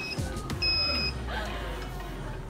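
Small plastic-wheeled child's tricycle rolling along a smooth store floor, a low rumble, with a short electronic beep about half a second in.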